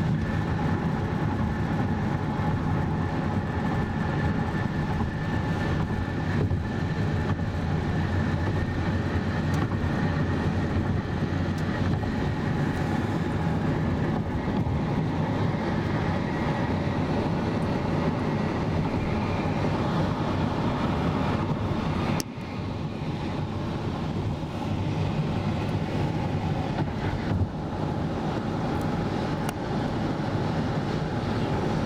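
Steady road noise inside a 2003 Acura MDX cruising at highway speed: a continuous low tyre-and-engine rumble heard through the closed cabin, briefly dipping in loudness about two-thirds through, with a single click a few seconds later.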